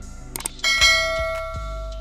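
A metallic bell ding struck about half a second in, ringing with several overtones and fading over about a second and a half, over background music with a regular beat.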